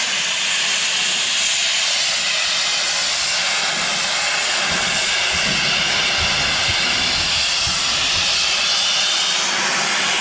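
A steam locomotive's safety valve lifting: a loud, steady hiss of steam blowing off, the sign that the boiler has reached full working pressure.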